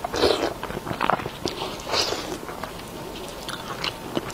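Close-miked eating: a person biting and chewing food, with three louder bites near the start, about a second in and about two seconds in, then softer small chewing clicks.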